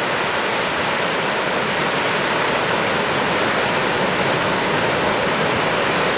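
Wide, tiered river waterfall pouring a large volume of water over rock ledges into a pool below: a steady, unbroken rush of falling water.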